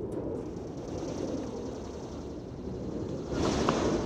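Steady low outdoor rumble of a large gathered crowd and open-air ambience. About three seconds in it swells into a louder, brighter rush of noise.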